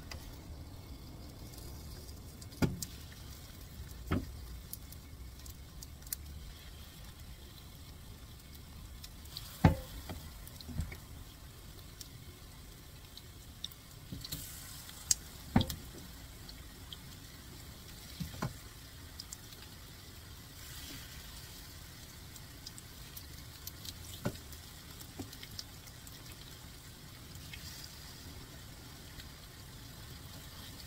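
Battered sweet potato slices frying in shallow oil in a non-stick pan: a light sizzle that gets a little louder from about halfway as more slices go in, broken by a handful of sharp taps and knocks.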